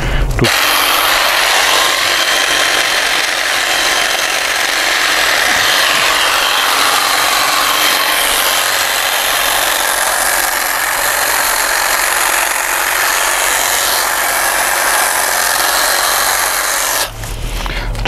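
Cordless electric hedge trimmer running continuously as its blades shear through thuja foliage. It stops about a second before the end.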